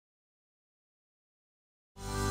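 Total silence, with music starting abruptly at the very end.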